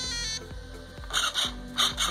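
A short electronic beeping tune ends in the first half-second. From about a second in, the buggy's steering servo buzzes in short repeated strokes as it swings the front wheels, now running on six volts from an external BEC.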